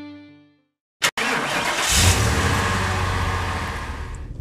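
Music fades out, and after a short silence a sharp click about a second in starts a steady car sound: a low engine rumble under road hiss, swelling briefly about two seconds in.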